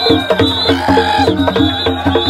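Music with a fast, steady percussion beat and a short melodic figure that repeats over and over.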